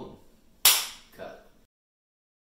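A single loud, sharp smack about two-thirds of a second in, dying away briefly in the room; the sound then cuts out abruptly near the end.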